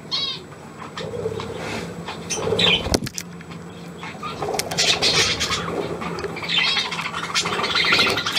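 Budgerigars chirping and warbling in short bursts, with some wing flutter as the birds move about the perches. A single sharp knock about three seconds in.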